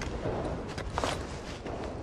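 Rustling and scuffing of a climber moving close to the microphone, with a few soft knocks.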